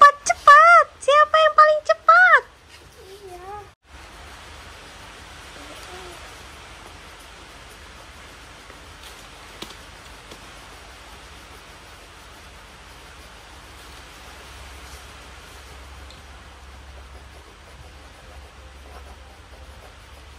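A child's voice for the first two seconds or so, then a steady, even hiss of background noise.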